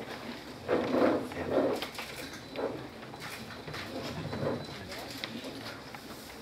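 Low murmur of voices in a hall, with a few soft clicks.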